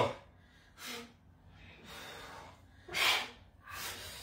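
Hard breathing from someone straining through dumbbell bicep curls: a short breath about a second in and a louder, breathy exhale about three seconds in.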